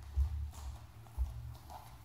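Barefoot footsteps on a wooden floor close to the microphone: a few low thuds, the strongest just after the start and another about a second later, with faint clicks between.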